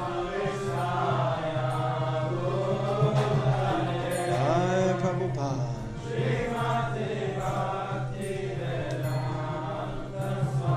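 Voices chanting Sanskrit devotional prayers, with a steady low drone beneath.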